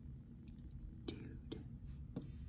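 Quiet room tone with a low steady hum, and a single softly spoken, near-whispered word ("Dude") about a second in.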